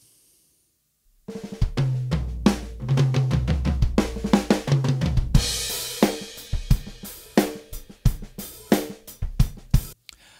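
Recorded drum kit with kick, snare, hi-hats and cymbals, and low notes underneath, played back as a song intro from unprocessed multitrack drum recordings, without mix presets; it sounds not as nice. It starts about a second in, with a cymbal crash washing out about halfway through.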